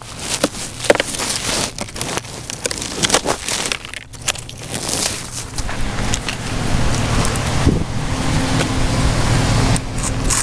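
Knocks, scrapes and footsteps on snowy pavement as a bulky salvaged item is carried along, then from about halfway a vehicle engine running steadily, getting slightly louder near the end.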